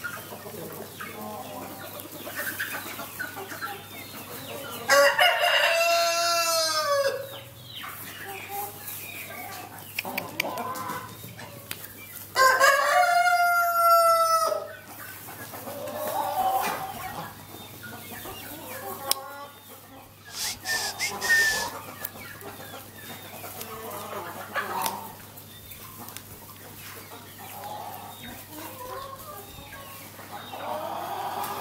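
A rooster crows twice, about five seconds in and again about twelve seconds in, each crow lasting about two seconds, with chickens clucking softly throughout.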